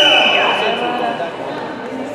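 A long, steady, high-pitched whistle blast that fades out about a second in, over spectators' voices talking and shouting.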